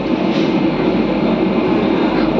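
Steady background din of a busy fast-food restaurant: an even rumble of noise with a low hum running under it.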